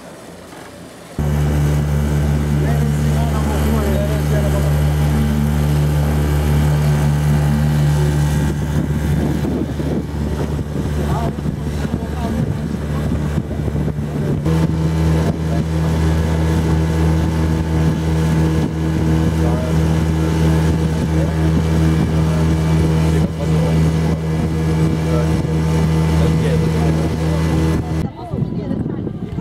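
Small boat's outboard motor running at a steady speed. Its pitch steps a little higher about halfway through.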